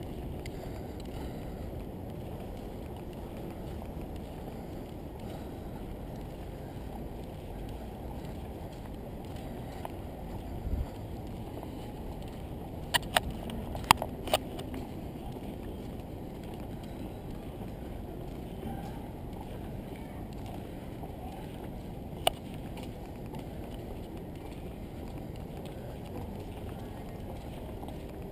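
Low, steady outdoor background noise from a camera carried on foot. About halfway through comes a quick cluster of four sharp clicks, and one more follows later.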